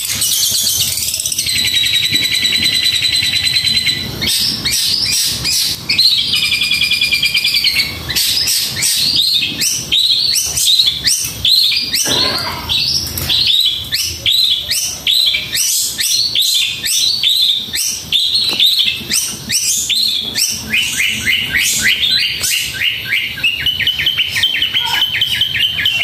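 Caged long-tailed shrike (cendet) singing a fast, densely packed song of rapid high notes and trills with hardly a pause, including a buzzy trill early on and a long string of quick falling notes.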